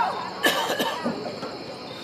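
A person coughing twice, about half a second in, just after a shouted call from the field trails off.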